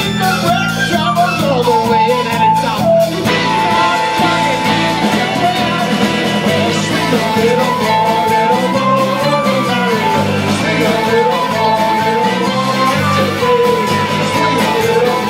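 Live Irish folk band playing a song, with banjo, acoustic guitar, fiddle, washboard and bass under a sung lead vocal.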